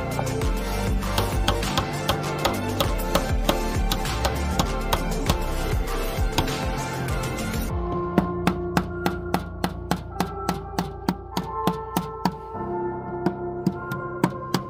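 Background music with a steady percussive beat of about three strikes a second over held tones; the treble drops away about eight seconds in.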